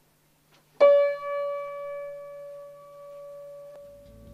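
A single high note struck once on a C. Bechstein upright piano about a second in, ringing out and slowly fading, then stopping short near the end.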